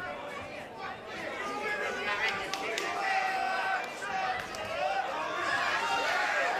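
Spectators' voices in a crowded boxing hall, many people talking and calling out at once in a steady murmur.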